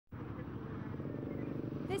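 Vehicle engines running steadily, a low, even hum with traffic-like noise over it.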